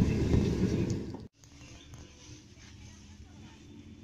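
Low rumble of a car cabin while driving, which cuts off abruptly about a second in, leaving only faint quiet ambience.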